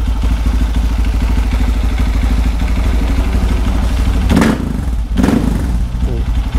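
Bored-up Honda CRF150L single-cylinder four-stroke engine running through a Norifumi Rocket 4 aftermarket exhaust: a steady idle, then two short throttle blips near the end.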